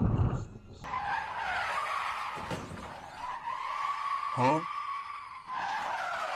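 Car tyres squealing in a long, steady skid as an Audi race car drifts sideways, starting suddenly about a second in after a brief low rumble.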